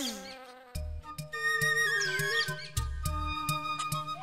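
A bee's wavering buzz fades out in the first moment. Then background music comes in, with a drum beat, light percussion clicks and a held melody that steps up and down.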